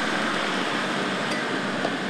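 Armoured military jeep driving past, its engine running steadily with the hiss of its tyres on the dirt road.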